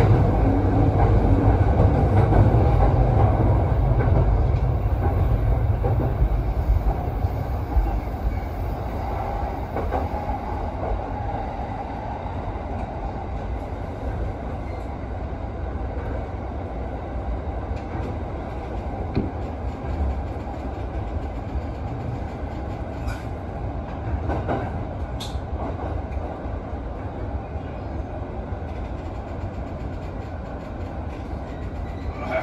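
Commuter electric train heard from inside the driver's cab: a steady low running rumble that fades over the first dozen seconds as the train slows, with a few sharp clicks from the wheels passing rail joints or points later on.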